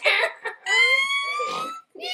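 A woman laughing hysterically: a short burst of laughter, then one long, high-pitched squeal that slowly rises in pitch.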